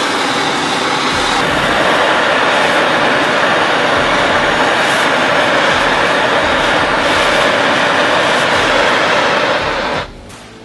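Small propane bottle torch burning with a steady, loud hiss of flame while it heats a steel butter knife to red-hot. The sound stops abruptly at the very end.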